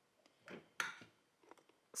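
Faint handling sounds of small kitchen items, a pepper grinder and a ceramic salt pot: a short soft rustle, then a sharp click just under a second in and a few faint ticks.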